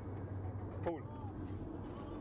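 Steady low drone of a moving car's engine and road noise, heard inside the cabin.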